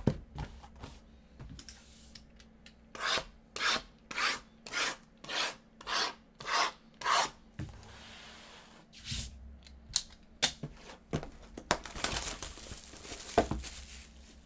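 Shrink-wrapped cardboard trading-card hobby boxes rubbing and sliding against one another as they are handled and stacked: a run of about eight even scrapes roughly half a second apart, then a steady rustle, a few light knocks and a longer scraping rustle near the end.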